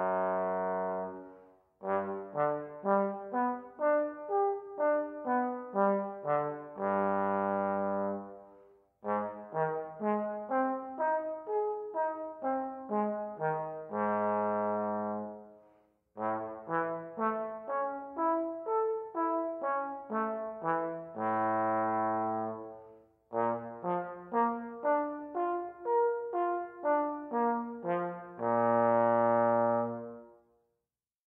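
Solo trombone playing a low-register warm-up exercise: four phrases of quick, separately attacked notes, each ending on a long held low note, with short breaks for breath between them.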